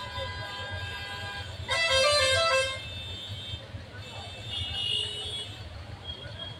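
A vehicle horn sounds once for about a second, a couple of seconds in, over a steady low rumble of street traffic. A fainter high tone follows near the end.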